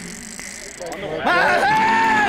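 A voice singing, sliding up about a second in into a long held note.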